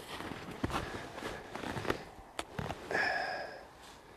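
Footsteps in snow on a woodland floor, a few soft irregular steps, with one sharp click about two and a half seconds in and a short breath near the end.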